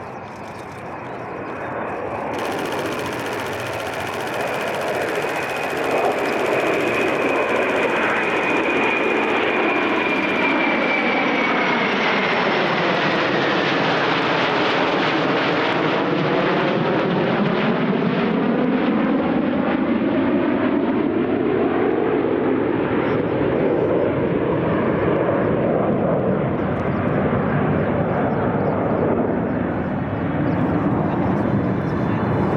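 A formation of five F/A-18 Super Hornet-type jets, each with twin F414 turbofans, passing overhead. The jet noise builds over the first six seconds, a high whine falls in pitch as they pass, and the noise stays loud as they fly away.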